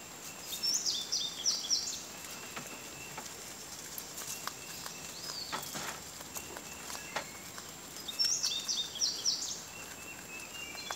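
Rabbits chewing and pulling at fresh leafy greens, a scatter of small crunches, clicks and leaf rustles. A songbird sings a short phrase of quickly repeated high notes twice, about a second in and again near the end; these are the loudest sounds. A faint steady high whine runs underneath.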